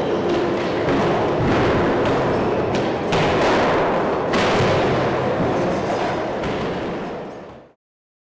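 Loud, dense background music with heavy drum thumps, fading out near the end.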